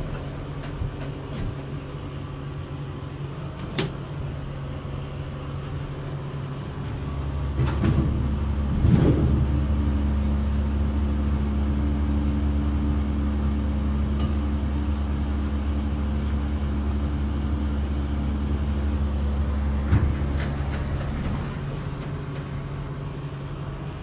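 Dover hydraulic elevator making a trip between floors: a thud about four seconds in as the doors close, then a low steady hum of the hydraulic drive starts and runs for about fourteen seconds before stopping a few seconds before the end. The cab fan whirs underneath throughout.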